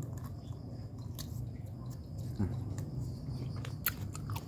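A person eating a freshly peeled longan: quiet, wet chewing close to the microphone, with a few sharp little clicks.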